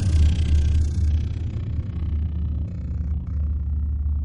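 Deep, steady low rumble of a cinematic logo sting, the sustained tail of a booming drum-like hit ringing on.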